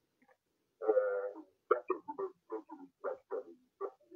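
A telephone caller's voice coming over the phone line, thin and indistinct. It starts about a second in with a drawn-out "uh", then runs on in short spoken syllables.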